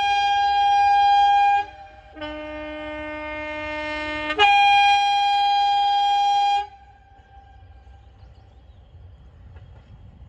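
Diesel train's two-tone air horn sounding a high note, a lower note, then the high note again, each about two seconds long, cutting off sharply. After it comes a faint low rumble from the approaching train.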